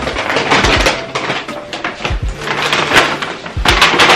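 Large brown paper shopping bag rustling and crinkling loudly as it is grabbed and handled, with a few dull thumps.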